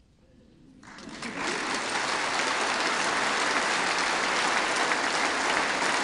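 Audience applauding: the clapping begins about a second in and swells within a second to steady, sustained applause.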